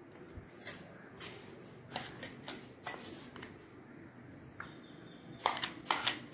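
A steel spoon scraping and tapping against a stainless-steel mixer-grinder jar as thick chilli chutney is scooped out: scattered light clicks, then a quicker run of sharper knocks near the end.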